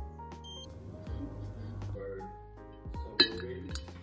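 A short electronic beep from an induction hob's touch control about half a second in, then a sharp clink of ice and a plastic ice cube tray about three seconds in, over background music.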